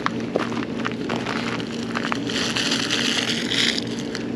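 Paper pastry bag crinkling in hand, with scattered clicks over a steady low hum. A smooth hiss lasting about a second and a half starts abruptly after the midpoint and cuts off near the end.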